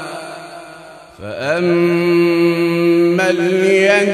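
Melodic Quran recitation: a reciter's voice holds a long drawn-out note that fades away. Just after a second in, a new phrase glides up in pitch and is held steady, then shifts pitch again a little after three seconds.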